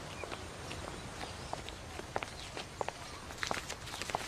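Footsteps walking on an outdoor path, a run of short, irregular steps over a steady background of outdoor ambience.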